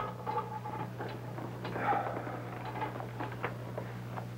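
Paper rustling with small knocks and clicks as a man settles into a desk chair and shuffles papers on the desk. A steady low hum runs underneath.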